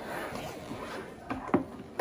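A child's small hard-shell suitcase being unzipped and its lid opened: a scratchy zipper run, then a few light clicks and knocks from the case's fittings and lid in the second half.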